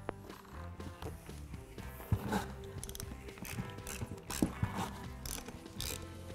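Socket ratchet clicking in short, uneven runs as it unscrews the 10 mm bolts that hold a plastic radiator fan blade to its fan clutch.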